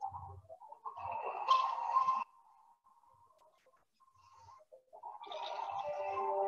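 Thin, band-limited soundtrack of a montage video playing through a screen share: a short passage that cuts off abruptly about two seconds in, a near-silent gap, then music starting near the end.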